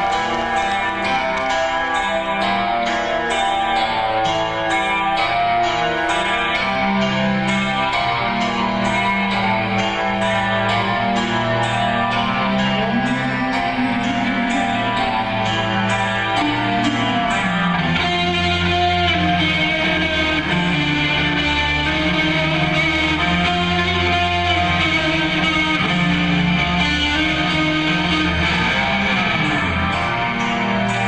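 Live rock band playing an instrumental passage led by electric guitar, with a steady ticking beat on top through the first half and a fuller, deeper bass line coming in about two-thirds of the way through.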